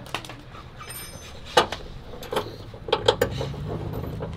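Scattered clicks and clanks of metal parts and tools being handled on a pickup's stripped front end, with a few sharper knocks near the end. A low vehicle engine hum comes in about halfway.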